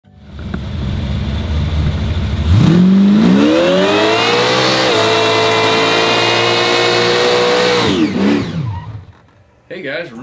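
Supercharged V8 of a Chevrolet Nova muscle car rumbling at low revs, then revving up hard about two and a half seconds in and held high through a tyre-smoking burnout, with the revs dropping away near the end.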